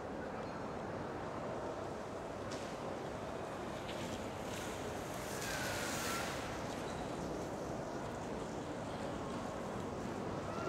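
Steady background noise of a large indoor shopping mall, a hum of ventilation and distant activity, with a brief swell of hiss about five seconds in.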